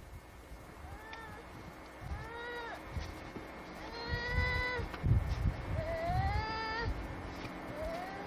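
A small child's drawn-out whining cries, about five of them, some arching and some rising in pitch, the longest held for nearly a second in the middle. Low rumbling wind and handling noise on the microphone runs underneath, loudest about five seconds in.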